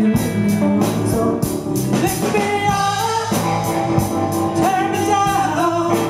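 A live rock band playing amplified electric guitars, bass and drums, with a singer holding long, wavering notes over a steady drum beat.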